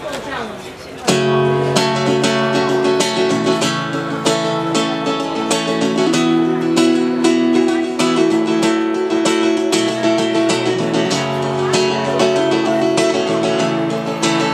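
Solo acoustic guitar coming in sharply about a second in with a chord, then plucked notes and chords: the instrumental opening of a song.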